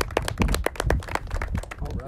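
People clapping in applause: quick, irregular hand claps that thin out toward the end.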